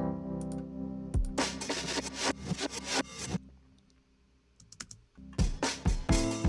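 Mix playback of a cinematic pop song's foundation tracks (drums, bass and keys). Sustained keys lead into a stretch with drum hits, then playback stops for about two seconds, with a few faint clicks in the gap, and starts again with heavy kick-drum hits near the end.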